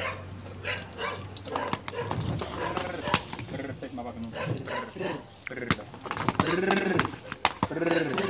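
Hooves of a pair of draught horses clip-clopping on a concrete road, with harness jingling, and a dog barking a few times, most clearly about two-thirds of the way in.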